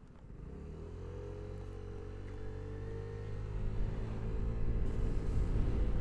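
Vespa GTS 125 scooter's single-cylinder four-stroke engine pulling away under throttle. The engine note rises over the first second or so, then holds a steady pitch while the sound keeps growing louder as the scooter gathers speed.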